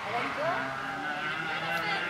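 Rally car engine heard through the trees as the car approaches unseen, running at high revs, with a rising rev about half a second in.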